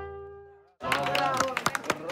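A brass band's last held notes die away to silence. Then, after a cut about a second in, people clap their hands in a quick string of sharp claps, with voices over them.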